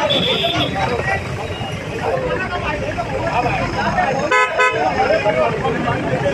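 Vehicle horn giving two short toots in quick succession about four seconds in, over the steady chatter of a crowd of voices.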